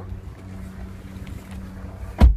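Steady low hum inside a parked car's cabin, the sound of the running car.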